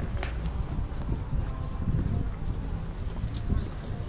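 Street ambience: a steady low rumble with indistinct background voices and a few light knocks.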